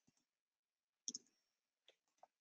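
Near silence with faint computer clicks: a quick double click about a second in and a softer single click near the end.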